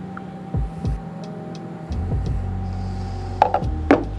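Soft background music over a steady low hum, then two sharp knocks near the end as the finished latte cup and the milk pitcher are set down on the counter.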